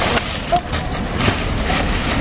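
Steady background rumble, like passing road traffic, with a few light knocks and rustles.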